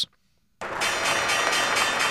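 A bell ringing steadily, starting about half a second in after a brief silence and carrying on with many bright, sustained tones. It serves as a sound cue leading into the stock market report.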